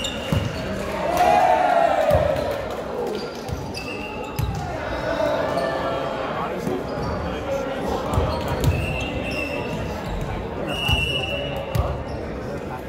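Volleyball ball strikes and bounces ringing in a large gymnasium, with short squeaks of sneakers on the hardwood court several times and players shouting.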